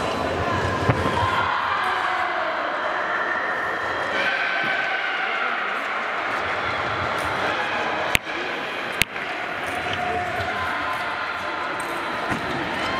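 Indistinct voices and chatter in a large, echoing hall. There is a single thud about a second in and two sharp clicks about a second apart past the middle.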